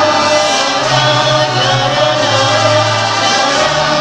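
Mariachi band playing and singing, several voices together over instruments, with sustained bass notes that change every second or so.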